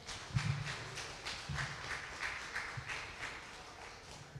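Footsteps and handling noise picked up by a handheld microphone as it is carried along: a run of soft taps, about three a second.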